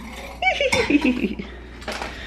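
A woman laughing in a few short bursts that fall in pitch, with a sharp knock near the end.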